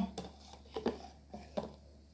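Metal spoon clicking and scraping against a plastic blender cup while stirring thick blended lemongrass paste: a few light, separate knocks.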